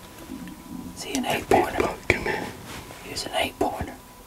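A man whispering a few words in two short spells, with one sharp click about two seconds in.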